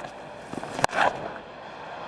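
Cricket bat striking the ball once, a single sharp crack just under a second in, over the steady background noise of the stadium crowd.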